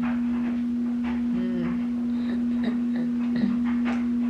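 A steady electrical hum held at one constant pitch, with a few faint short sounds over it.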